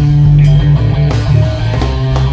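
Rock band playing an instrumental passage with guitar, bass and drums, with no singing.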